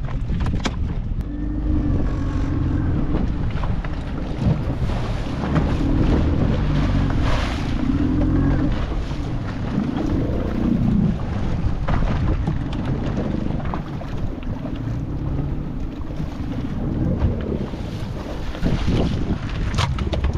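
Wind buffeting the microphone on a fishing boat under way at sea, over the boat's engine running steadily and waves splashing against the hull.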